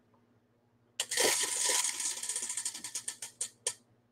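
Voilamart spin-to-win prize wheel spinning, its pointer ticking against the pegs. The ticks start about a second in as a fast rattle, then space out and slow until the wheel stops.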